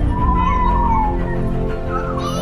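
Music along with an emergency-vehicle siren wailing: one rise and fall in pitch in the first half.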